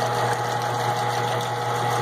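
Mount Baker gold shaker table running with its water flow on: a steady low mechanical hum with a couple of faint constant tones over a wash of water.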